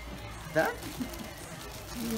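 A brief spoken word, "Dá?", over background music.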